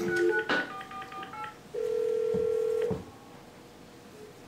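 Desk telephone: the dial tone cuts off, a quick run of touch-tone keypad beeps follows, then a single ring of the ringback tone lasting about a second.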